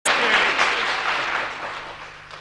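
Applause from a group of people, the clapping dying away.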